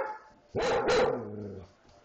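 Dog barking twice in quick succession, about half a second and one second in, the second bark trailing off into a lower drawn-out note.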